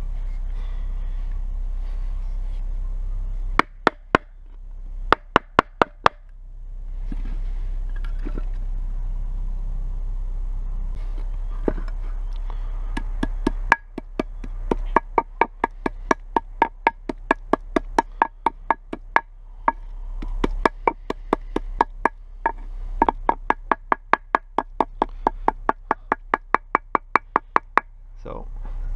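Wooden stick pounding a whole mouse and chokecherries on a flat stone, crushing the bones into the mash: sharp, ringing knocks. A short run comes a few seconds in, and a steady run of about three strikes a second starts about halfway and lasts to the end, between stretches of a steady low rumble.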